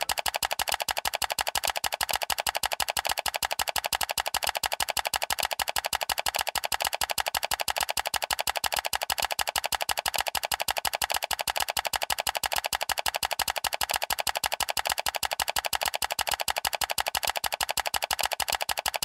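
Outro music with a fast, even percussive beat.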